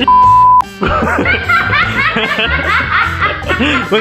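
A short censor bleep, one steady beep about half a second long, covers a swear word. Then a young woman laughs hard and high-pitched, over background music.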